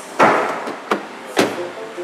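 A 2017 MINI Cooper Clubman's door being opened by its outside handle, with the handle and latch giving two loud clunks about a second apart and a lighter click between them.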